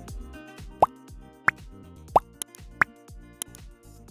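Background music overlaid with a transition sound effect: four short, quick rising 'bloop' sounds about two-thirds of a second apart, followed by a few sharp clicks.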